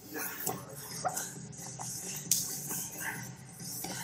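Two grapplers scuffling on a padded mat, with scattered brief knocks and rustles and short grunts of effort.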